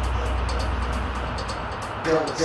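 Background music: a low droning bass fading out near the end, under a steady high ticking beat about four times a second.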